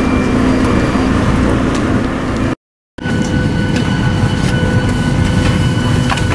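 Steady low rumble of airport terminal background noise, cut off abruptly about two and a half seconds in. After a brief silence comes the steady cabin noise of a jet airliner: a low rumble with a high, steady whine over it.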